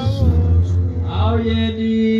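Worship music: a man's chant-like singing voice, its pitch gliding and breaking, over a steady held note that continues underneath.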